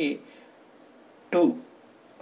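A man's voice says a word or two, with a pause between, over a thin, steady high-pitched tone that runs unbroken in the background.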